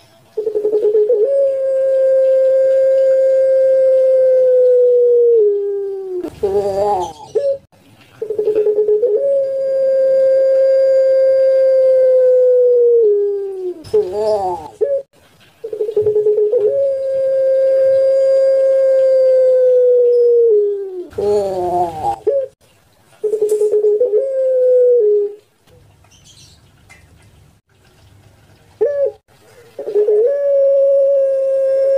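Caged puter (Barbary dove) giving its long-drawn coo: three long, steady coos, each held about five seconds and sliding down at the end, and each followed by a short rough note. A shorter coo follows, then a pause of a few seconds, and another coo begins at the end.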